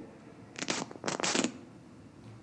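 Two short bursts of rustling noise, the first about half a second in and the second, slightly longer, just after one second.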